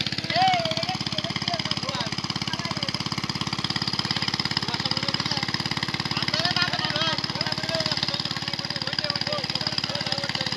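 A small engine running steadily with a rapid, even beat, with people's voices talking over it at times.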